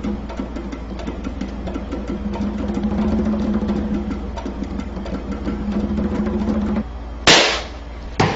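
Background music with a light percussive beat, then, near the end, a single sharp, loud balloon pop.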